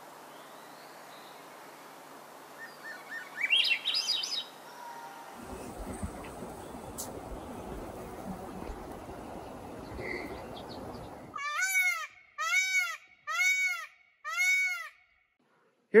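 A Swainson's thrush singing a rising phrase of whistled notes, its breeding-season song to attract a mate. Then an Indian peafowl (peacock) gives four loud calls, each rising and falling in pitch, about three-quarters of a second apart near the end.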